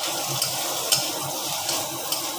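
Food frying and sizzling in a pan while it is stirred with a metal spatula, with a couple of sharp clicks of the spatula against the pan about half a second and one second in.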